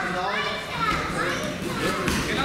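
Several voices shouting and calling out at once, overlapping, echoing in a large sports hall.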